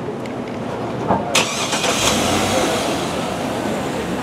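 Cadillac Escalade's engine starting, about a second and a half in, then running steadily, with a knock just before it catches.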